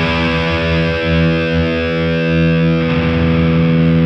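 Heavily distorted seven-string electric guitar, a VGS Soulmaster 7, letting a chord ring on steadily. The notes shift about three seconds in.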